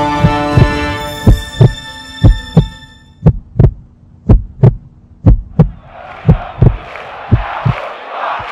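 A heartbeat sound effect: pairs of low thumps about once a second. It plays under the tail of a music chord that dies away over the first few seconds, and crowd noise swells in over the last two seconds.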